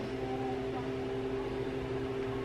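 Steady room hum with a few constant tones over a faint hiss, as from a running fan or appliance; no other event stands out.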